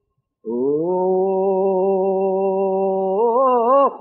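A man singing unaccompanied, a Greek folk song in a slow, free style: after a moment of silence he holds one long, steady note, then ornaments it with a quick wavering turn near the end.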